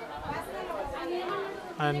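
Voices chattering in the background, softer than a close speaker, with a low thud a little before the middle.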